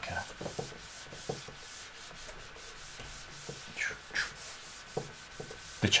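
Handheld whiteboard eraser rubbing across a whiteboard in many quick back-and-forth strokes, wiping off marker writing.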